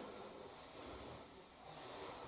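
Faint room tone: a low, even hiss with no distinct sound.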